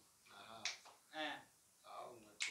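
Soft, brief bits of a man's voice, with one sharp click about two-thirds of a second in.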